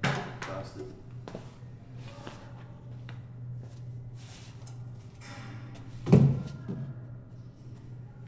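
Two short wordless vocal sounds from a man, grunt-like: one at the very start and a louder one about six seconds in. They sit over a steady low hum.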